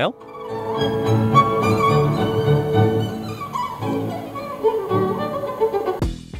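Bowed-string music, violin and cello, played through a Brionvega Radiofonografo RR226 all-in-one stereo and recorded in the room. It rises in just after the start.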